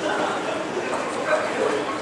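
Crowd of people chatting, with a few short, high-pitched calls rising above the murmur.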